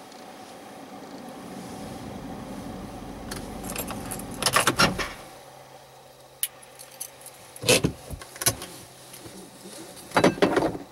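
Keys jangling in short clusters, about halfway through and twice more later. Under them a low vehicle rumble swells over the first few seconds and then stops.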